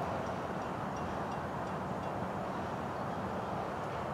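Steady rushing of a car's air-conditioning blower inside a closed cabin.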